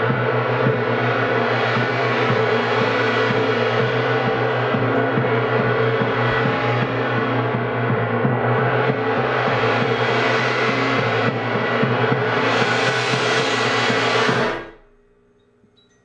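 A large gong is kept sounding by a rapid series of mallet strokes, a dense shimmering roar of many overtones that swells louder twice in the second half. Near the end it is suddenly stopped and falls to near silence.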